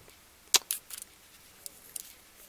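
Small handling sounds of fingers working a strip of paper washi tape: one sharp click about half a second in, a softer click and rustle right after, and a couple of faint ticks near the end.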